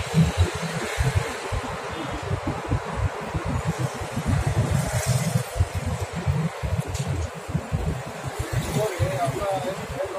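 Outdoor street ambience: a continuous, choppy low rumble with indistinct voices, and a faint voice speaking near the end.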